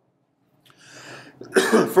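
A man clearing his throat once, after about a second of silence, going straight into speech.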